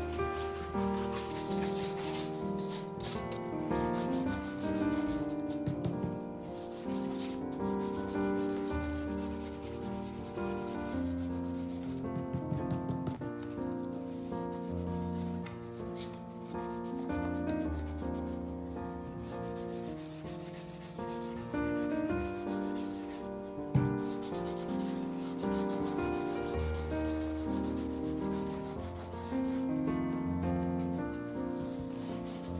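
Repeated rubbing of a shoe brush and cloth on a leather dress shoe, with a few short pauses, over background music with sustained notes.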